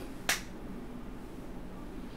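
A single sharp click about a quarter second in, over a faint steady low hum.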